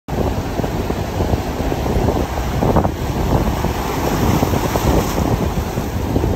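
Surf washing through the rocks and shallows, with wind buffeting the microphone in a steady, loud low rumble.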